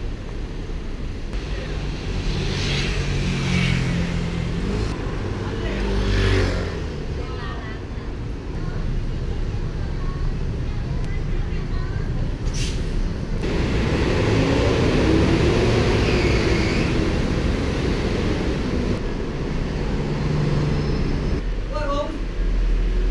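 City street ambience: cars passing, with people talking nearby.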